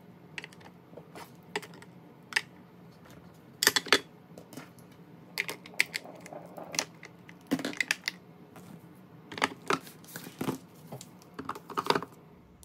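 Makeup products being set into a clear acrylic makeup organizer, clicking and tapping against the plastic. The taps come scattered and irregular, several in quick little clusters.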